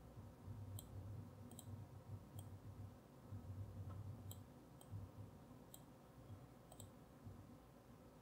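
Faint computer mouse clicks, a handful spaced roughly a second apart, over near-silent room tone with a low hum.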